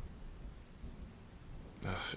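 Storm ambience: rain with low thunder underneath. A man's voice comes in near the end.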